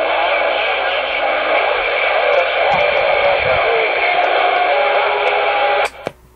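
An incoming transmission from another station, heard through the speaker of a Ranger 2950 radio on the CB band: a narrow, tinny voice half-buried in steady hiss and static. It answers a radio check and cuts off abruptly near the end when the other station unkeys.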